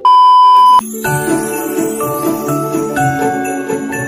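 A loud, steady test-tone beep of just under a second, the TV colour-bars tone used as a transition effect, cuts off and gives way to Christmas music with jingle bells and a steady beat.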